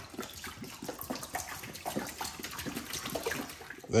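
Water pouring from a plastic gallon jug into the empty stainless-steel tank of an ultrasonic record cleaner, splashing steadily with small irregular spatters.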